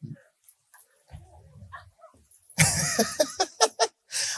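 A man's voice through a microphone: a loud, breathy laugh about two and a half seconds in, breaking into a quick run of short pulses.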